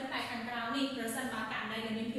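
Only speech: a woman talking steadily in Khmer, explaining a maths lesson.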